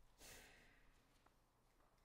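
Near silence, with one short, soft breath about a quarter second in.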